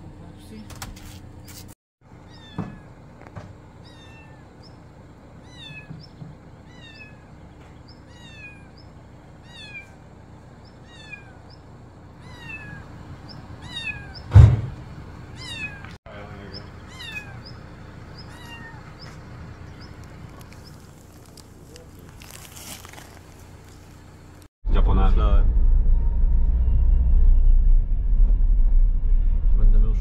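A small kitten meowing over and over: short, high-pitched, falling meows about one a second, with one loud thump about halfway through. Near the end it cuts to the steady low rumble of a Renault's cabin while driving on the road.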